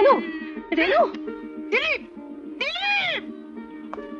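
A woman wailing in four short cries that rise and fall in pitch, about one a second, over a steady drone of background music.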